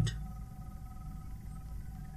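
Room tone from the recording microphone: a faint steady low hum with a few thin steady tones above it, and no distinct events.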